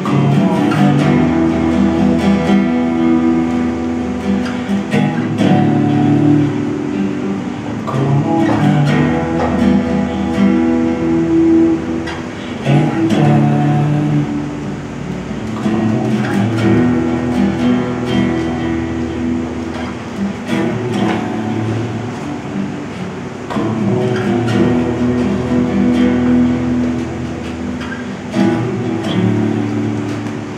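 Solo acoustic guitar playing chords in a continuous flowing passage.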